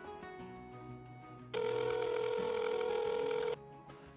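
Telephone ring tone heard down the line: one steady ring about two seconds long, starting about one and a half seconds in, over quiet background music.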